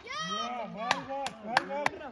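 Children and men shouting across an open field during a cricket game, their calls rising and falling in pitch, with several sharp clicks or knocks from about a second in to near the end.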